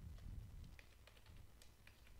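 Faint typing on a computer keyboard: a few soft, irregularly spaced key clicks.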